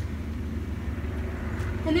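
Steady low rumble of background machinery or traffic, unchanging throughout.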